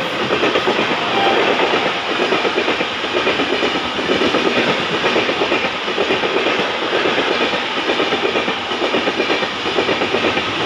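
Passenger coaches of an express train running past at speed: a loud, steady rumble of wheels on rails with a rapid clickety-clack.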